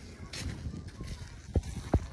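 Footsteps on a wet dirt road, recorded on a hand-held phone. A few sharp, low thumps fall in the second half, the loudest near the end.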